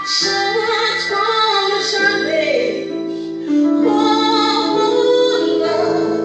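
A woman singing a slow worship song into a microphone, holding long notes, over sustained instrumental backing.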